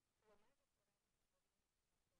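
Near silence: dead air, with one very faint, brief pitched blip about a third of a second in.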